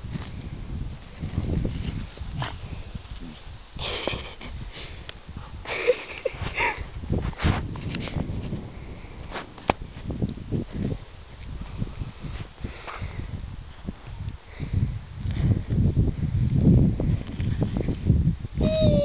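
A dog rustling through long grass, nosing and sniffing at the ground and then rolling over, heard as uneven rustling with short sniffs and scrapes over a low rumble.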